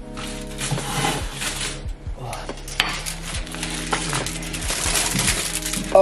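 Kitchen handling noise as a dinner plate is taken out of an oven: clinks and knocks of crockery and cookware, with rustling of aluminium foil, over steady background music.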